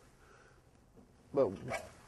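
Near silence for just over a second, then a man's voice starts a word near the end.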